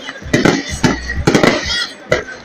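Fireworks bursting overhead: a quick run of about five sharp bangs, two of them close together a little past the middle.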